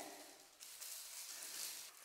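A faint, even hiss with no distinct events, close to room tone.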